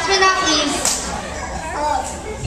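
A crowd of children talking and calling out at once, many overlapping voices, a little louder in the first second.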